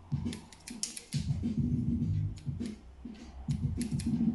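Small barber's scissors snipping eyebrow hairs: a quick run of crisp snips in the first second, then a few more spaced out.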